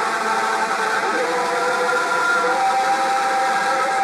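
A church choir, mostly women's voices, singing together and holding long sustained chords.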